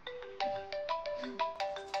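Mobile phone ringtone playing: a quick melody of short, bell-like notes, about five a second.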